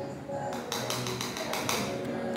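A small metal spoon tapping and scraping against a glass jar in a quick run of light clicks, starting about half a second in, over soft background music.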